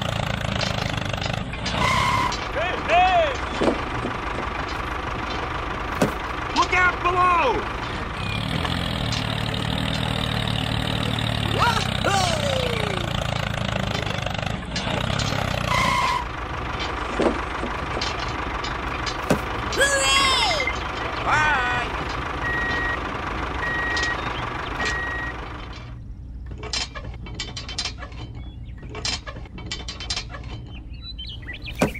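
Engine sound effect laid over a toy tractor: a steady low running drone, with short high calls that slide down in pitch and a few brief tones over it. About two thirds of the way through comes a run of evenly spaced reversing beeps. Near the end the drone stops, leaving light clicks and taps of small plastic parts being handled.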